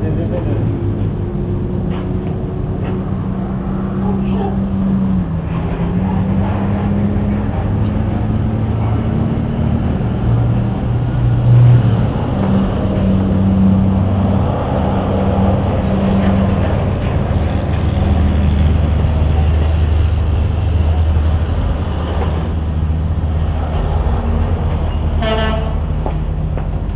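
A motor vehicle engine running, its low hum shifting in pitch several times as it speeds up and slows, with a short horn toot near the end.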